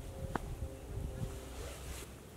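Wind buffeting the microphone as a low, steady rumble, with a single faint click about a third of a second in.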